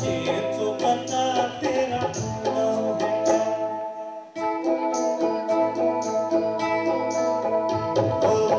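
Live band playing a Hindi film song: a male singer over a Roland XP-60 keyboard, guitar and tabla, with a steady percussive tick. The music drops away briefly about four seconds in, then comes back in.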